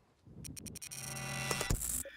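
Edited sound effect for an on-screen graphic: a few quick sharp clicks about half a second in, then a swell of tones that builds louder, with a low hit near the end.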